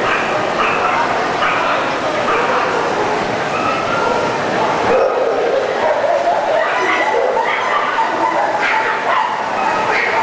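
Dogs yipping and barking in short, high calls over continuous crowd chatter.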